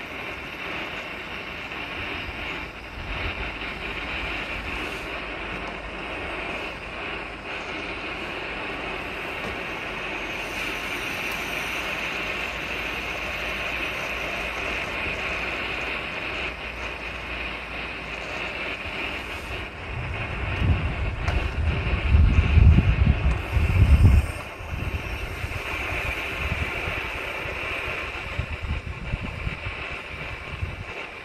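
Propane torch burner running steadily, heating a Gas Vap sublimator so that oxalic acid sublimes into the hive. About twenty seconds in, a few seconds of loud low rumble.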